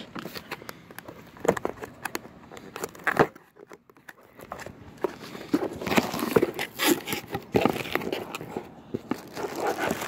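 Plastic packaging bags crinkling and rustling as parts are handled out of a cardboard box, with scattered clicks and knocks. It goes quiet for a moment partway through, then the rustling picks up and is busiest in the second half.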